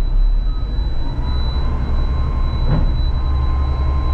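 Garbage truck's engine and hydraulics running as the ejector blade is worked from the cab controls, heard from inside the cab: a steady low drone with a faint whine that comes in about a second in. A brief knock sounds near three seconds.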